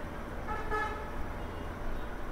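A single short beep with a steady pitch, about half a second in and lasting under half a second, over steady background hum.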